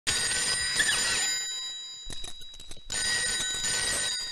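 A telephone ringing, two rings, the second starting about three seconds in, with a few faint knocks in the gap between them.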